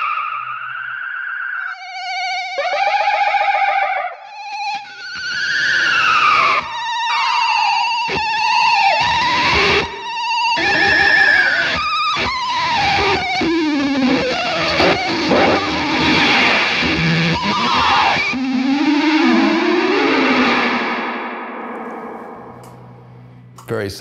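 Electric guitar, a 1959 Fender Jazzmaster, played through a vintage Boss vibrato pedal, a Digitech Whammy shifting it up in pitch, a Z.Vex Fuzz Factory and echo. The notes warble and slide in pitch and repeat in echoes: a sci-fi, slowed-down sound almost like a rotating speaker. It dies away near the end.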